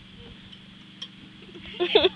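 A mostly quiet moment with one short click about halfway, then girls' laughter breaking out near the end.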